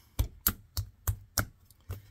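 A series of sharp taps and knocks, about three a second and slightly uneven, from a log of clay being rolled back and forth under the hands on a wooden work table.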